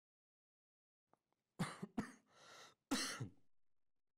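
A man coughing and clearing his throat in short bouts, about one and a half seconds in and again near three seconds, with a brief sharp knock between them.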